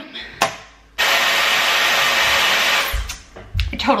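A hair dryer running steadily for about two seconds, switching on and cutting off abruptly.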